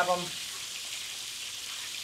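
Flour-dredged chicken wings frying in hot oil and bacon fat in a propane plow-disc cooker's wide pan: a steady sizzle.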